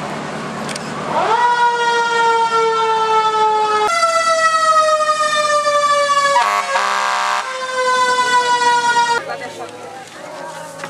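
Fire truck siren sounding close by. About a second in it rises quickly in pitch, then slowly falls. Near four seconds it jumps back up and slowly falls again, with a short horn blast about halfway through, and it cuts off about a second before the end.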